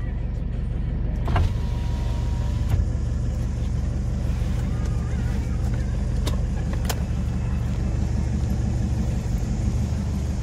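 Kia Pregio van's engine running steadily, heard from inside the cab, with a few faint clicks.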